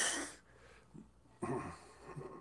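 A man's breathy laughter: a loud wheezing exhale trails off in the first half second, then a short snorting laugh comes about a second and a half in.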